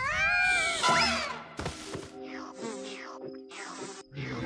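Wordless cartoon character vocal effects: a high cry that rises and then holds, and a second gliding cry about a second in. A sharp click follows, then soft background music with falling glides.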